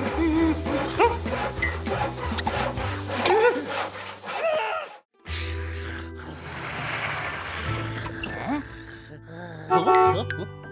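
Cartoon soundtrack music with playful gliding sound effects and short wordless vocal noises. It cuts off abruptly about five seconds in, then starts again.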